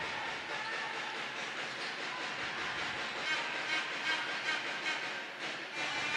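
Steady background noise of an indoor basketball arena: an even wash of hall ambience with no distinct ball bounces, whistles or voices standing out.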